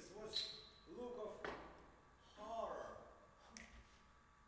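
Quiet speech from stage actors in a few short phrases, with a short sharp clink about half a second in and a faint click near the end.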